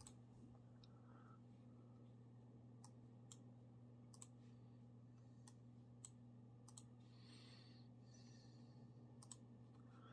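Computer mouse clicks, about seven single sharp clicks spaced irregularly, over a faint steady hum.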